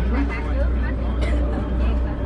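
Steady low drone of a SuperDong passenger ferry's engines under way, with people's voices talking over it.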